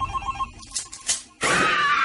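Telephone ringing: a quick, evenly pulsing electronic ring tone that fades out about a second in. A short pitched sound comes just before the end.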